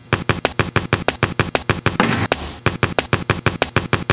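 Quick sharp slaps and taps on wet clay, cut into a steady beatbox-style rhythm of about six hits a second, with a longer noisy swish about halfway through.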